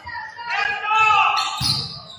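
Live gym sound of a basketball game: a ball bouncing on the hardwood court, with voices calling out in the hall.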